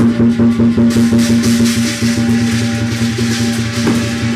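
Lion dance percussion: a large Chinese drum beating a quick, steady rhythm, with hand cymbals clashing over it from about a second in.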